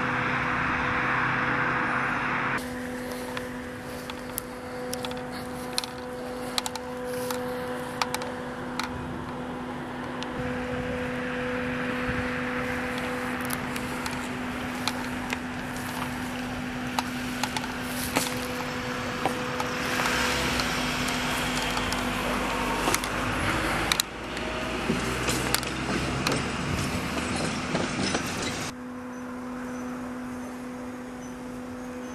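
Outdoor roadside noise, traffic-like, with a steady low hum and scattered sharp clicks and knocks. The background changes abruptly a few times.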